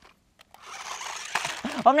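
Small electric drive motors of a remote-control stunt car whirring, a steady whir that starts about half a second in after a brief dropout and runs under a spoken word near the end.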